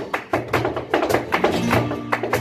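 Live flamenco music: a flamenco guitar playing under handclaps (palmas) in a quick, even rhythm.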